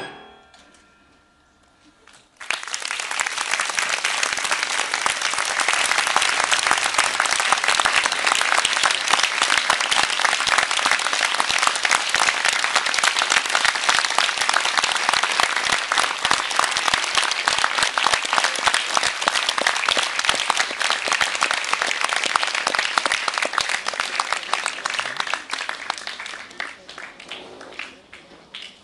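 The last chord of a small chamber ensemble (flutes, recorder, violin) rings out and dies away. After a brief hush of about two seconds, an audience bursts into sustained applause that thins out near the end.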